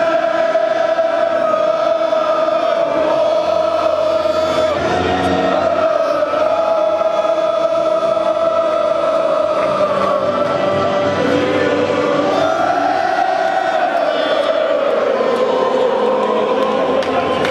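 Large football crowd singing a slow song together in unison, with long held notes, heard from among the singers in the stand.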